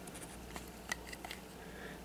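Faint, scattered clicks and rubbing of plastic building bricks being handled as a small piece is pushed onto the model.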